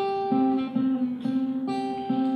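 Acoustic guitar being played: a repeating low note picked about twice a second under higher held notes.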